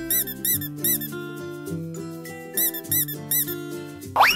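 Rubber duck squeaking as it is squeezed: six short squeaks in two sets of three, each rising and falling in pitch, over background music.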